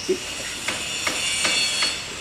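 A series of four sharp knocks, roughly two to three a second, over a steady high hiss.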